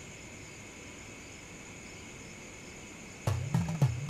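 Faint steady night ambience of insects, crickets trilling continuously. About three seconds in, a louder low-pitched voice-like sound comes in over it.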